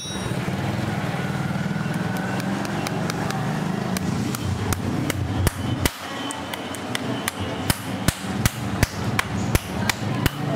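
Farrier's hammer tapping on the nails of a freshly fitted steel horseshoe on a horse's hoof: a run of sharp, uneven strikes, about two a second, starting about halfway through, over a steady low hum.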